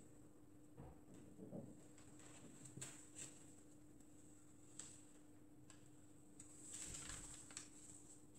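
Near silence: a pen faintly scratching as it traces along the edge of paper pattern pieces, with a few soft ticks and a faint rustle near the end, over a low steady hum.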